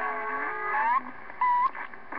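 Received audio from a Galaxy CB radio: band noise carrying several steady whistling tones, with one tone rising just before the middle and a short, louder beep-like tone after it.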